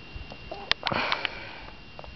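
A person sniffing: one short, noisy breath in through the nose about a second in, just after two sharp little clicks.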